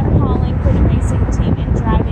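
Low, steady wind rumble on the microphone, with short snatches of voices near the start and near the end.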